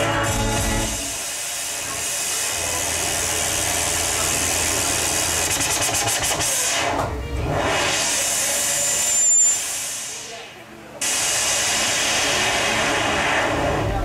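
Live band's electronic noise passage: a dense hissing, rushing wash with little bass. It swells near the middle, fades away, then cuts back in abruptly about eleven seconds in.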